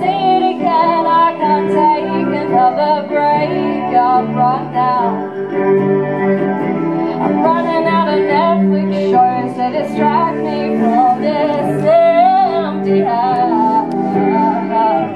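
A woman singing a song live while playing guitar: a sung melody with vibrato over steady guitar chords.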